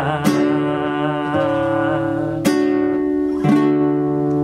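Nylon-string classical guitar strumming chords: three strums, a moment in, about two and a half seconds in and about three and a half seconds in, each left to ring.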